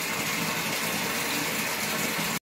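A steady, even rushing noise, water-like in character, running without change.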